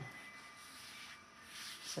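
Faint rubbing and handling sounds as a hand sprinkles and spreads flour from a small metal cup over a sheet of puff pastry on a silicone mat, a little louder near the end.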